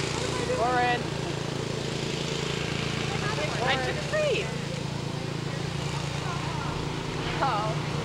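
A few short, high-pitched voices, about a second in, near the middle and near the end, over a steady low hum.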